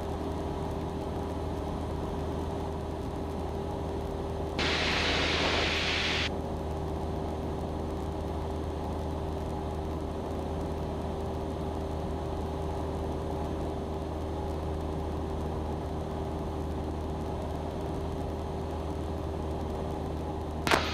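Steady drone of a Cessna 172's engine and propeller in cruise, heard in the cabin. About five seconds in, a burst of hiss lasting a second and a half rises over it and stops abruptly.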